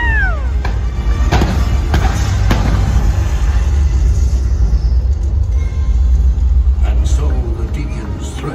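Loud show music with a heavy low rumble over the sound system, broken by sharp bangs of pyrotechnic explosions: three in quick succession about two seconds in and another near the end. A high, falling cry is heard right at the start.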